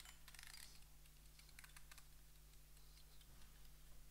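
Small clicks from an egg timer being set by hand: two quick runs of faint clicking, each about half a second, in the first two seconds, over a low steady hum.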